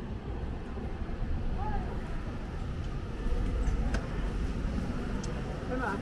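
Outdoor street ambience: a steady low rumble with faint voices of people around, a single click near the middle, and a man's voice saying 'Ja' at the very end.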